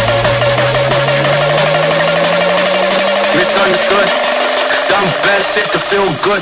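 Raw hardstyle mix in a build-up with no kick drum: a rising tone climbs slowly and steadily beneath a fast repeating synth note. Choppy vocal-like sounds come in over the second half.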